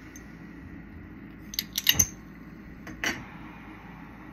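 A flameworking bench torch being turned on and lit: a quick cluster of sharp metallic clicks about one and a half to two seconds in, the loudest at two seconds, and one more click about three seconds in.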